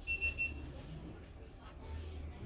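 An electronic beeper at a service counter sounding a quick run of short, high-pitched beeps in the first half second, over a low background hum.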